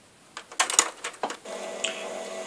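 A quick run of sharp clicks and taps, then from about halfway a Hohner G3T headless guitar starts ringing a sustained chord.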